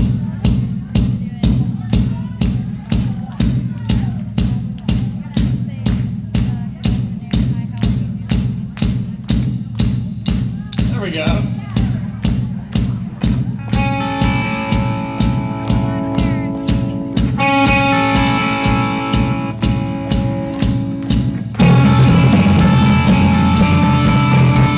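Live song intro on a single drum beaten with sticks in a steady rhythm, about two hits a second. A brief vocal call glides through near the middle, sustained keyboard chords join about two-thirds of the way in, and the full band comes in louder near the end.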